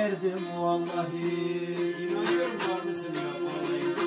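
Several bağlamas (long-necked Turkish saz lutes) playing an instrumental folk passage together, quick plucked strokes over a steady held drone note.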